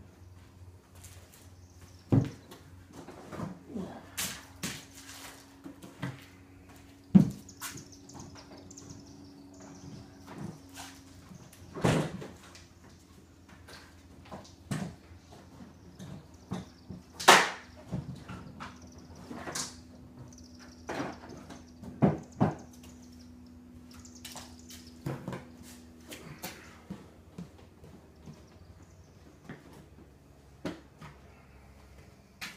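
Irregular knocks and clatters of gear being handled on and lifted off a small plastic Pelican Bass Raider boat, with its trolling motor and battery coming off; a few sharp bangs stand out. Under them runs a low steady hum, with faint high chirping.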